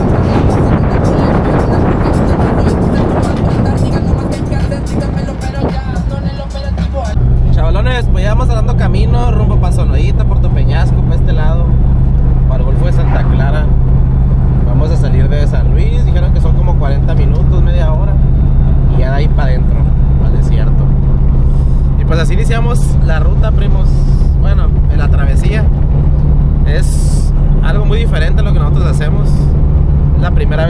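Wind rushing over an outside-mounted microphone on a moving off-road vehicle. About seven seconds in, the sound changes to the steady engine and road drone heard inside the cab, with music with singing over it.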